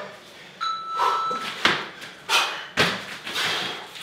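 Feet landing on gym floor mats as two people do power hops and forward jumps: a run of thuds about every half second, with a brief thin squeak near the start.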